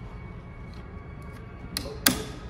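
Faint clicks of a floor-scrubber squeegee's metal retaining band being worked into place, then a sharp click near the end as its latch closes.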